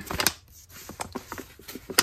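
Paper envelope being handled and turned over in the hands: short, scattered crinkles and light taps of paper, the strongest near the start.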